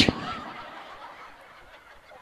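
A man's short, breathy laugh blown straight into a handheld microphone right at the start, then faint background noise that fades away.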